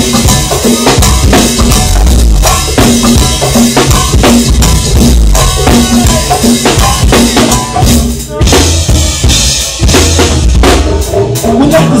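Live band playing a loud, drum-heavy instrumental groove: a drum kit with bass drum and snare keeps a steady beat under a repeated low bass figure, dipping briefly a little past eight seconds in.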